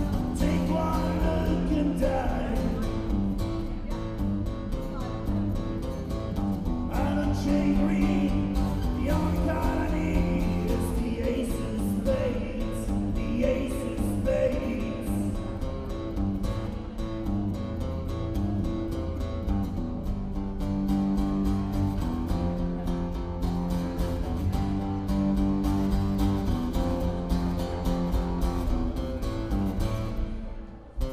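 Live acoustic guitar strumming chords, with a man singing over it through the first half; the second half is mostly the guitar alone.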